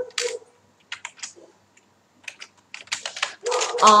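Computer keyboard typing: several short runs of key clicks with pauses between them.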